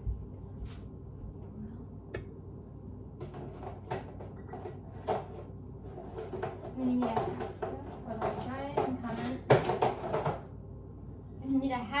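Kitchen cupboards and items on a counter knocked and clattered in a string of separate sharp knocks as someone fetches an ingredient, with a faint voice in the background.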